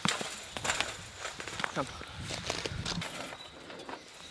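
Scattered clicks and knocks of people climbing over a chain-link fence and a metal farm gate, with footsteps on dry, stony ground.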